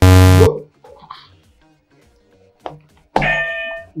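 A loud electronic game-show buzzer sounds once for about half a second at the start. A short burst of music follows near the end.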